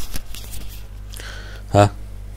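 A few light clicks and scratches of a stylus marking on a pen tablet or touchscreen, over a steady low hum, followed near the end by a short spoken 'ha'.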